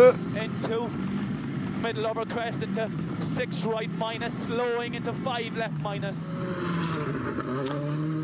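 Rally car engine running steadily under load, heard from inside the cabin, with the co-driver's quick pace-note calls over it. A rushing, gravelly noise rises near the end, and the engine note climbs right at the close.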